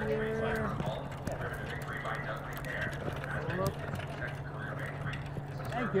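People talking at a distance over a steady low hum, with scattered faint clicks.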